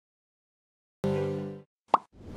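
Silence for about a second, then the opening of a TV station's electronic outro sting: a short pitched synth tone that fades out within half a second, followed near the end by a brief pop.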